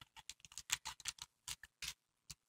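Clear cellophane treat bag crinkling as fingers grip and handle it: a faint run of small irregular crackles and clicks.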